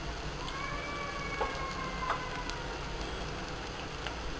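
Onions and spice powders frying in oil in a pressure cooker, a steady low sizzle with a couple of light clicks. Through the middle runs a long, faint, slightly falling whistle-like tone from another source.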